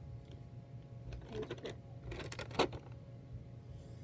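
Crackling and clicking close to the microphone in two short clusters, the second ending in one sharp, louder click.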